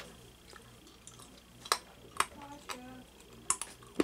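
Mouth sounds of someone chewing a stick of stale baseball-card-pack gum: a few scattered sharp clicks and smacks, with a brief low hum in the middle.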